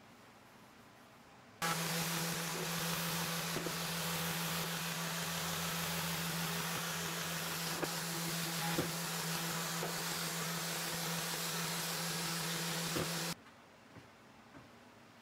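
Random orbital sander with a dust extraction hose attached, run over the cast iron top of a table saw to sand off rust and smooth it. It starts suddenly about a second and a half in, runs as a steady hum under a wide rushing noise with a few light clicks, and switches off suddenly shortly before the end.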